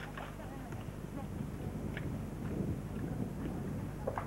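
Faint, indistinct voices over a steady low rumbling noise, with a few small knocks.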